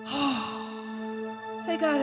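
A steady held chord of background music sustains underneath. Over it, a woman's voice through a microphone makes a short breathy sound with falling pitch at the start, and a brief vocal phrase with bending pitch near the end.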